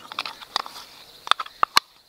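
A spoon stirring Mod Podge thinned with water in a plastic bowl: soft wet stirring with a few sharp clicks of the spoon against the bowl.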